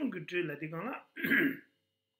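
A man's voice speaking for about a second, then a single throat clearing just over a second in, followed by a pause.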